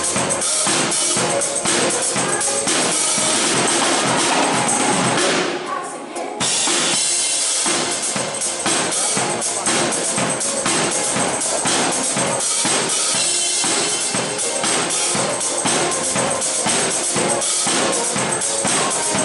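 Live pop band playing with a steady beat while a woman sings into a microphone; the music drops out briefly about six seconds in, then comes back in.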